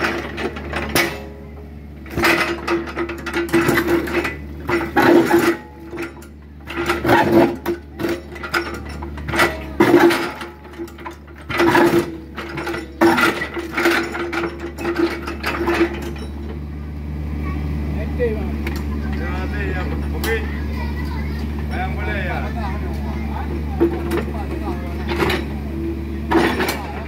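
Compact excavator running, with a steady engine hum and a steady whine, while its steel bucket scrapes and knocks against broken concrete and rock in irregular clanks and crunches. In the last third the knocks die away and only the steady engine hum continues.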